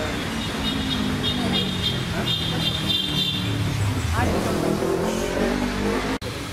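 People talking over a steady low rumble, with a brief rising high tone about four seconds in.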